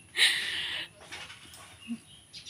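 A woman's breathy laugh: one hissing exhale through the teeth lasting under a second, with no voice in it.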